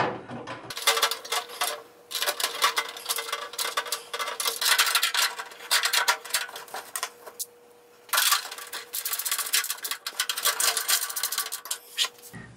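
Small metal screws and nuts clinking and rattling as they are handled in a metal parts dish, with a short pause about halfway through. A faint steady hum runs underneath.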